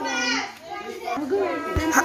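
Children's voices chattering and calling out.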